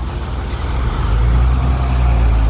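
Low engine rumble of a heavy road vehicle such as a truck or bus on the street, growing louder about a second in.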